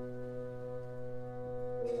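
Orchestral French horns and winds holding a soft sustained chord, with a new attack and a change of note about two seconds in.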